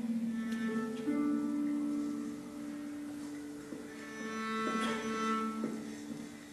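Slow classical string music with long held notes, played from a video over the hall's speakers.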